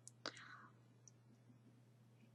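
Near silence: room tone with a faint steady hum and a soft breathy sound about a quarter second in, with a couple of tiny clicks.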